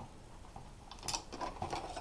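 Faint handling sounds: a few light clicks and rustles of small objects being picked up and set down on a wooden table, the strongest about a second in.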